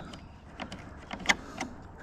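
A few small, sharp clicks of a plastic clip being worked loose by hand from a tractor work-light bracket, the loudest about halfway through.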